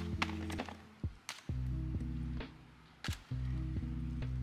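Background music with low sustained notes that shift in steps, broken by a few sharp taps.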